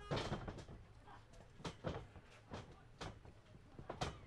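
A few faint, sharp knocks and thuds, spaced unevenly over about four seconds against a quiet background.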